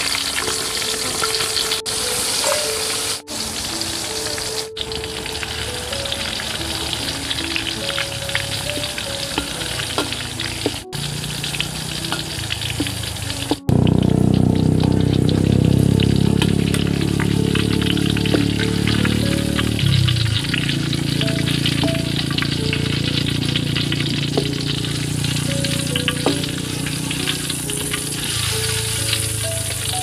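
Hot oil sizzling in a wok as chopped chilies, shallots and garlic fry in it, with a tune playing underneath. The sound is cut several times and gets louder about halfway through.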